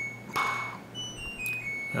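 Dishwasher playing a short electronic melody of high beeps, several notes at different pitches one after another. This is the appliance's end-of-cycle signal.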